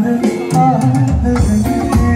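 Live pop band music through a stage PA: a male singer over electric guitars, keyboard, bass and drum kit. The low bass drops out for about half a second near the start, then comes back.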